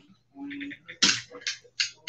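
Trading cards and dice being handled on a play mat, with three short clicking rattles in the second half.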